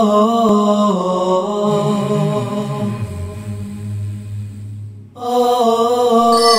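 Intro music of a slow vocal chant with long held notes that step down in pitch. It fades and breaks off briefly about five seconds in, then resumes.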